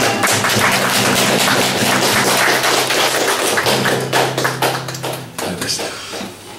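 Acoustic guitars playing a song's closing bars: fast, percussive strumming over a held low bass note, dying away about five seconds in.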